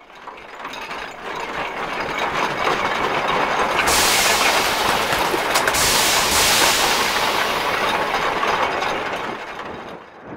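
Added sound effects of mechanical clatter: turning gears and ratcheting machinery, building up from the start. From about four seconds in a loud hiss joins it, and it all fades near the end.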